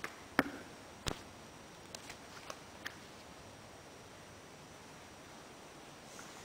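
A few sharp clicks and knocks, the loudest about half a second in and another about a second in, then four lighter ticks between two and three seconds in, over faint room tone.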